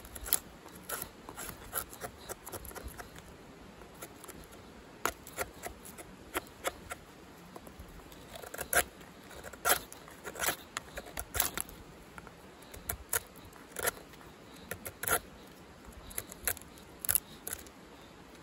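A thin stick is shaved by drawing it against an ESEE CR 2.5 knife blade fixed upright in a stump. It makes a series of short, irregular scrapes, sparse at first and more frequent from about the middle on.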